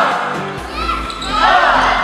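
Volleyball rally: ball hits and sneakers squeaking on the hall floor, with crowd noise, under background music.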